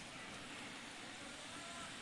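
Faint, steady background noise of a large, crowded competition hall during a robot match, with no distinct events; a faint brief tone sounds about one and a half seconds in.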